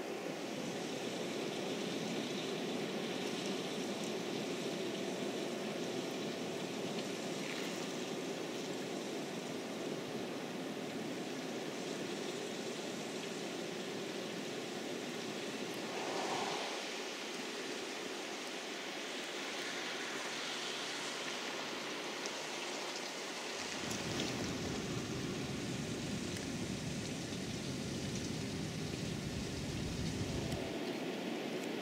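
Steady hiss of rain on wet ground, its tone shifting slightly around 16 and 24 seconds in.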